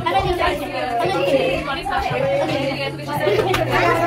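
Overlapping chatter: several voices talking at once, none clearly picked out.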